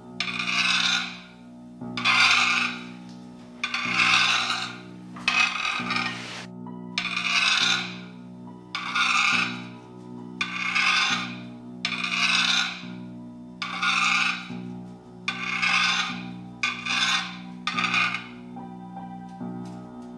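About a dozen rasping strokes, one roughly every second and a half, stopping shortly before the end. Background music with long held chords plays underneath.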